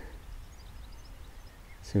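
Quiet outdoor ambience: a steady low rumble of wind on the microphone, with a few faint, short, high bird chirps about half a second to a second in. A man's voice starts a word at the very end.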